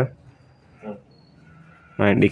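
A quiet pause with faint room hiss, broken about a second in by one short vocal sound from a person.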